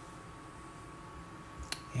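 Quiet room tone with a faint steady hum, and a single sharp click near the end.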